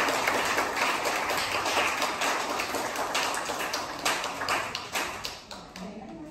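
Audience applauding, the clapping thinning to a few scattered claps and fading away near the end.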